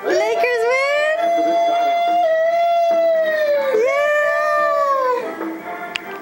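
A toddler's high-pitched cheering shout, held in three long drawn-out calls, the last one falling away about five seconds in.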